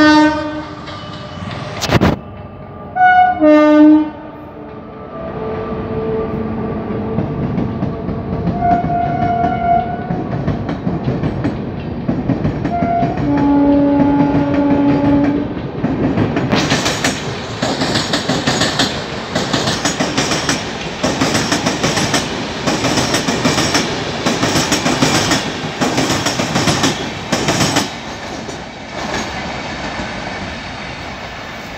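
WAP-5 electric locomotive sounding its horn in several blasts, the longest about halfway through. It is followed by the Shatabdi's LHB coaches rolling past with a steady rhythmic clickety-clack of wheels over rail joints and points.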